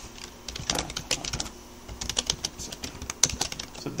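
Typing on a computer keyboard: quick runs of keystrokes with short pauses between them, one keystroke louder than the rest near the end.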